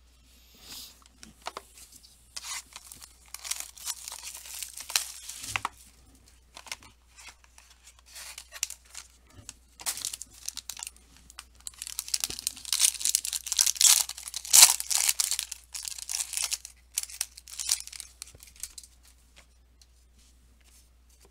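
A trading-card pack's plastic wrapper being torn open and crinkled as the cards are taken out. The rustling comes in irregular spells and is loudest a little past the middle.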